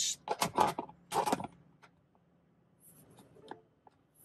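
Handling noises of a car key being fitted into a key programmer's transponder reader: a few short scuffs and clicks in the first second and a half, then only faint scratching.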